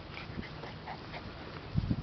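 Puppies giving a few faint, short cries, with a low thud near the end.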